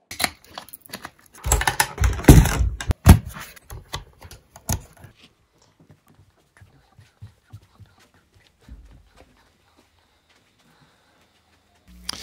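Camera handling noise: a quick run of clicks and knocks for the first few seconds, loudest about two to three seconds in, then sparse faint ticks.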